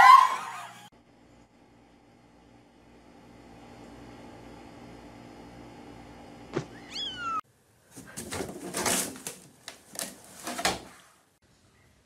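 A short laugh, then a faint steady hum with a kitten's brief meow a little past halfway, followed by a few bursts of rustling noise.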